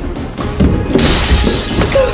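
Thuds of a body hitting the floor, then a loud crash of shattering glass from about a second in, over background music.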